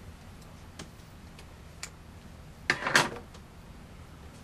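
Small scissors snipping off the excess wire of a twist tie: a few faint clicks, then a louder cluster of snips about three seconds in.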